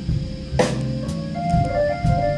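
Live blues band playing: electric guitar holding high sustained notes over bass and drums, with a sharp drum hit about half a second in.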